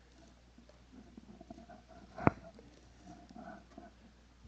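Faint rustling and scratching of fingers pulling crowded seedlings out of a pot of potting mix, with one sharp knock a little over two seconds in.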